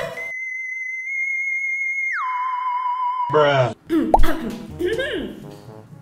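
An electronic sound-effect tone edited over the audio: one steady high note held for about two seconds, then sliding down to a lower note that holds for about a second and cuts off suddenly. Women's voices follow.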